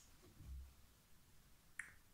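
Near silence: room tone, with a faint low thud about a quarter of the way in and a single short click near the end.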